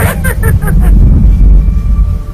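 Loud, deep rumbling horror sound-effect sting. It opens with a quick stuttering burst of rapid pulses in the first second.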